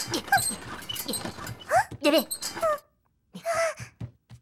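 Cartoon jelly characters making short, squeaky wordless chirps and whimpers that slide up and down in pitch, over a rough scraping noise that stops a little before three seconds in. One more short squeaky call comes near the end.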